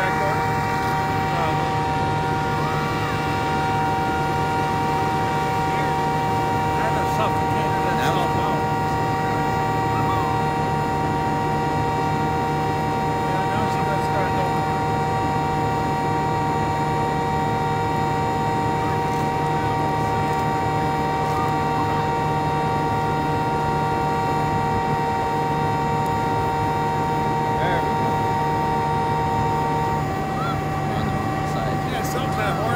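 An engine running steadily at constant speed, a droning hum with a steady whine over it that never changes. Faint voices come and go.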